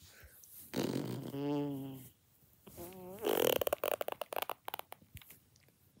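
A person making mouth sound effects: a held, voice-like tone about a second in, then a short wavering tone, and a buzzing, rapidly pulsing rasp a little after three seconds.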